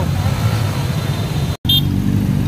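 Dense motor-scooter traffic: a steady low rumble of many small engines, with a momentary gap in the sound about one and a half seconds in.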